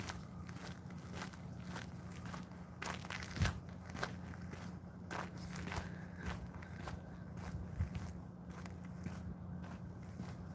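Footsteps walking on dirt at a steady pace of about two steps a second, with a faint steady low hum underneath.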